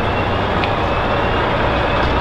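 A lorry's diesel engine idling close by, a steady low drone.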